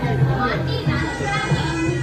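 Song playing for a dance: a sung melody over a steady beat, with children's voices mixed in.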